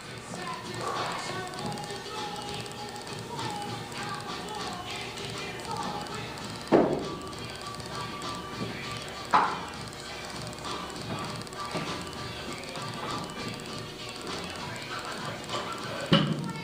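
Background music and distant voices, with two loud clanks of weight plates, about seven and nine seconds in.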